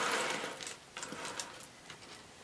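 A pile of small sterling silver jewelry pieces (chains, earrings, charms) being rummaged through by hand: a soft rustling slide at first, then scattered light metallic clinks.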